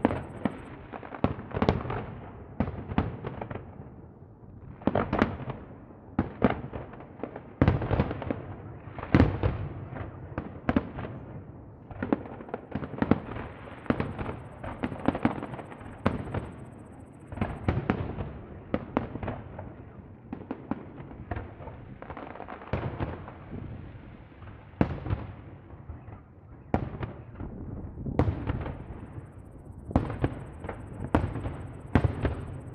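Aerial firework shells bursting in a continuous barrage: many bangs in quick, uneven succession.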